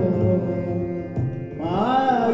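Carnatic music in raga Sindhu Bhairavi. A male voice holds a note, dips, and then slides upward near the end, over a steady drone.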